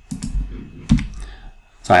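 A few sharp clicks of a computer mouse on a desk: a pair in quick succession near the start, then two more about a second in.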